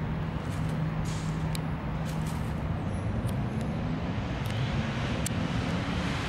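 Steady low rumble of road traffic, with a handful of short, light ticks scattered through it.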